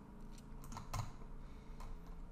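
A few faint, scattered clicks of a computer keyboard and mouse over a low steady hum.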